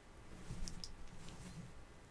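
A couple of faint clicks and a short, faint muffled sound from a person stifling an excited reaction with a fist pressed against the mouth.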